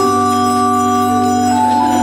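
Pipe organ playing slow sustained chords over a held low pedal note, the chord changing near the end.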